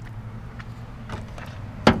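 A low steady hum, then a single sharp clunk near the end as the hood of a 2004 Ford Crown Victoria Police Interceptor is unlatched and lifted at the front.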